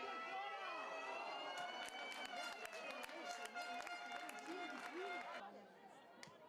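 Players' voices shouting across a football pitch during play, over a steady held tone, with a rapid run of sharp clicks in the middle; the sound cuts off abruptly near the end.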